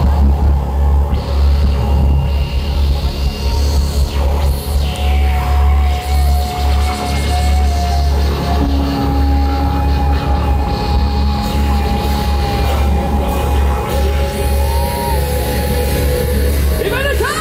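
Live rock band playing an instrumental passage over a large stage PA, heard from the crowd. The bass is heavy, and a long held lead note comes in about five seconds in and sustains.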